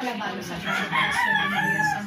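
Rooster crowing once: one long call beginning about half a second in and lasting over a second.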